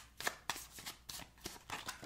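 Tarot deck being shuffled in the hands: a quick, uneven run of about ten soft card clicks and slaps.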